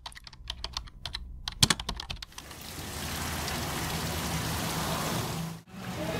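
Quick irregular clicks like keys being typed on a keyboard for about two seconds, then a steady hiss until a brief break near the end.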